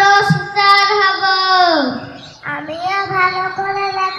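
A young child's voice, amplified through a microphone, chanting a long drawn-out line on a held pitch that falls away and stops about two seconds in, then starting a new sung phrase after a short breath.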